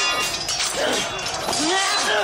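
Film battle sound: swords clashing with metallic clinks amid men's shouts and yells.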